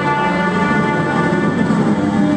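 Live experimental music: a dense, steady drone of sustained tones with many overtones, a brass horn among them.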